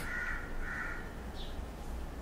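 A crow cawing twice in quick succession, followed by a short, high bird chirp about one and a half seconds in, over a steady low hum.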